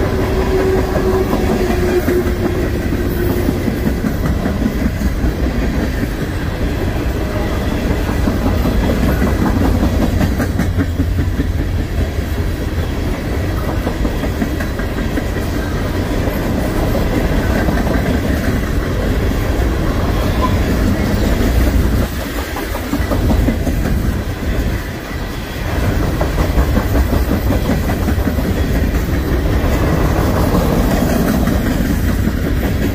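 Freight train of steel hopper cars rolling past close by: a steady low rumble of wheels on rail with clickety-clack over the joints. A thin tone sounds for the first few seconds, and the rumble briefly drops in loudness a little over two-thirds of the way through.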